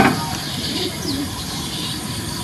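Low bird cooing in the background over a steady hiss, with a faint higher chirp in the middle and the fading tail of a sharp knock at the very start.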